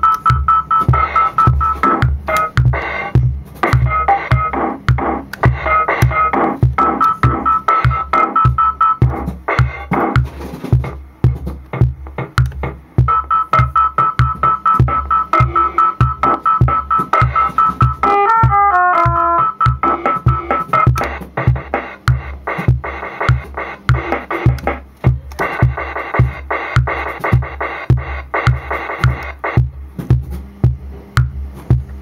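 Roland DR-55 Dr. Rhythm drum machine playing a steady, evenly spaced drum beat, clock-synced to a circuit-bent Lego music toy that loops bleeping electronic tones over it. The tones drop out briefly a third of the way through, and a short falling run of notes comes a little past the middle.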